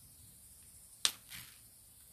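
A single sharp snap about halfway through, followed by a brief soft rustle, as hands pull a snake plant's root ball apart into two plants.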